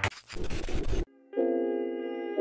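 Electronic dance music cuts off into about a second of static-like glitch noise. After a brief dropout, a sustained music chord comes in.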